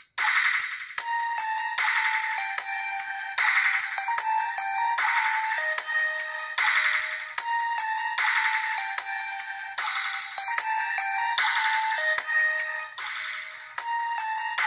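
Thin electronic beat loop from a small handheld beat-maker: a short synth lead melody over hissy, shaker-like percussion, repeating about every second and a half, with nothing low and no bass line yet.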